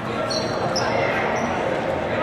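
Gym court noise: dodgeballs bouncing on a hardwood floor under indistinct players' voices, echoing in a large hall. A few short, high sneaker squeaks come about half a second in.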